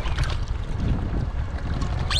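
Strong wind buffeting the microphone, a steady low rumble, with a hooked bass splashing at the water's surface near the start.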